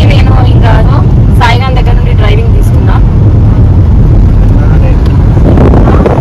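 Steady low road and engine rumble of a car being driven, heard from inside the cabin, with a woman talking over it for the first few seconds.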